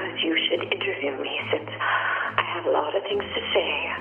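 Narrow-band, telephone-like speech over a steady low hum that shifts slightly lower about three seconds in.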